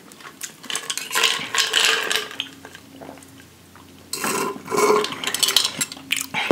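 Ice and glass clinking: ice cubes rattling in a glass mason jar as it is handled and picked up, in two spells of clatter with a quieter gap between.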